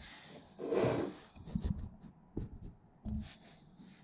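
A person breathing out hard about a second in, then a few soft knocks and shuffles.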